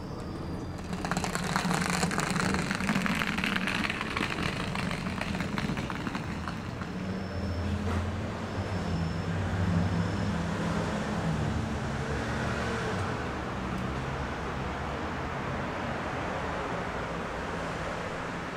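Outdoor background noise: a steady low rumble of road traffic. About a second in, a stretch of crackling noise starts and lasts several seconds.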